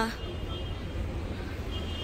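A car driving slowly past at close range, over a steady low hum of traffic.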